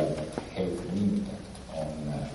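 A man's low-pitched voice speaking in short, broken phrases.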